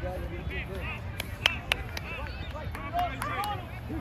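Spectators' voices calling and cheering at a distance across a youth soccer field, over a steady low rumble. A few sharp clicks or taps sound about a second and a half in and again around three seconds.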